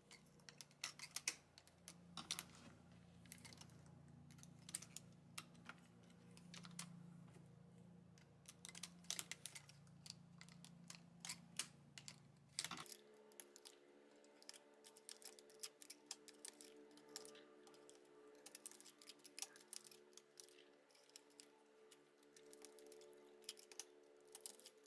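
Faint, irregular clicking of a metal transfer tool against the needles and plastic needle bed of an LK150 knitting machine as stitches are bound off by hand.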